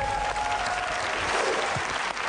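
Studio audience applauding a correct answer on a TV quiz show.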